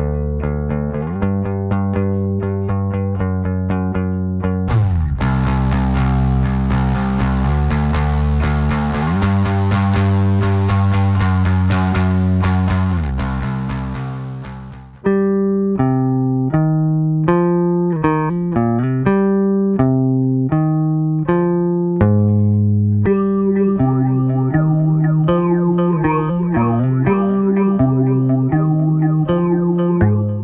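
A bass line played through the Bassrift plugin's presets. In the first half it is distorted and fuzzy, turning brighter and buzzier about five seconds in, then fading out. From about halfway a new phrase of separate plucked bass notes plays through the "Bass in the Space" preset, with chorus, delay and reverb engaged, and fades out at the end.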